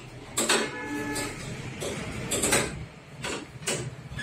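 Metal frame of a folding commode chair being worked by hand: an irregular run of clicks and clattering knocks, with a short creak early on.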